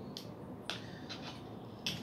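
Three faint, sharp clicks of small phone parts and tools being handled on a workbench, spread across the two seconds over a quiet room hiss.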